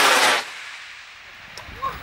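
Model rocket motor exhaust heard from the ground as a loud, even rushing noise that cuts off suddenly about half a second in, at first-stage burnout of a two-stage rocket. Faint background follows.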